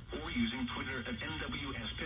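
A man's voice speaking from a radio broadcast through a radio's speaker, thin-sounding with the top cut off, over a low steady hum.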